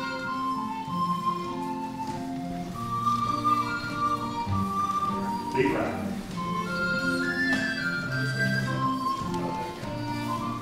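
Small live folk band playing a lilting English country dance tune, a fiddle and a flute carrying the melody over a steady chordal accompaniment.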